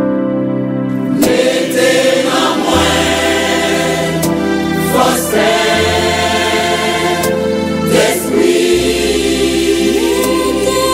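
Gospel choir music: voices singing together over sustained chords, with the bass note changing about every three seconds.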